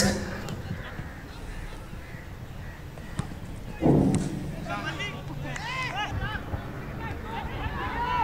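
Live sound from an outdoor football pitch: players shouting during play, with one loud shout about four seconds in followed by a run of short, high calls, over low field noise.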